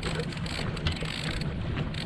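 Boat's outboard motor running steadily at trolling speed, a low even hum, with wind noise on the microphone.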